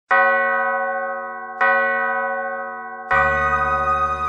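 A bell struck three times, about a second and a half apart, each stroke ringing on and fading. With the third stroke a low sustained tone comes in as the intro music begins.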